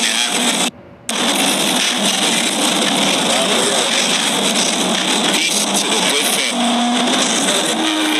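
Loud, steady rushing noise with faint voices underneath. It cuts out briefly near the start and stops abruptly at the end.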